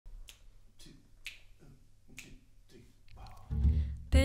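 Finger snaps keeping time, about two a second, counting in the band. A little before the end the jazz quintet comes in, led by a low bass.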